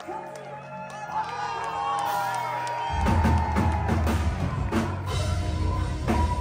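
Live symphonic metal band playing: a voice sings over sustained keyboard chords, and about halfway through the drums and bass come in and the music gets louder.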